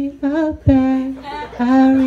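A person humming a slow tune into a microphone in long held notes with a slight waver.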